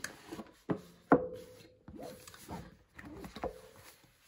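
A cardboard slide-out tarot deck box being slid open and handled: a few sharp taps and knocks, the strongest about a second in, with card stock rubbing and sliding between them.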